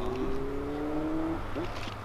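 Engine of a motor vehicle accelerating, its pitch rising slowly until it stops about one and a half seconds in, with a low steady hum underneath.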